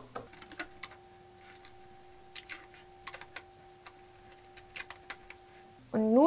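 Light, irregular clicks of a pen and rubber bands against the clear plastic pegs of a Rainbow Loom as the band pieces are slipped off onto the pen, over a faint steady hum.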